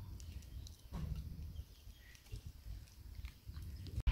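A person eating, chewing and smacking the lips softly, with small scattered clicks over a low rumble.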